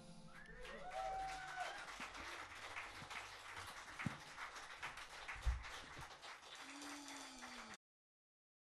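Faint audience sounds after a live band's song ends: scattered claps and clicks, with a short whoop about a second in and a single thump about five and a half seconds in. The sound cuts off abruptly just before the end.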